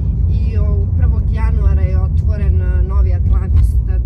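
Steady low road and engine rumble inside a moving car's cabin, with voices over it.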